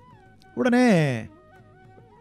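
Soft background music with a few held notes. About half a second in comes one drawn-out sound from a man's voice, about three-quarters of a second long, falling in pitch.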